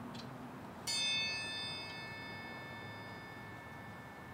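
A small, high-pitched bell struck once about a second in, its tone ringing on and fading away over about two seconds.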